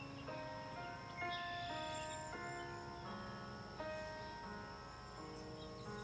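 Quiet instrumental accompaniment with no voice: a slow run of held chords, a new chord sounding about every second, as the backing track plays out the end of the song.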